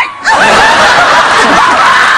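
Studio audience laughing loudly, many voices together, swelling in after a brief dip at the very start.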